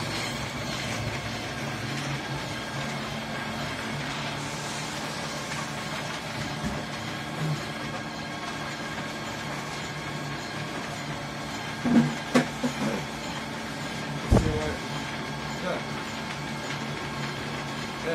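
Coal-dust pellet press running with a steady machine hum. A few brief louder sounds break in near the two-thirds mark, among them a short low thump.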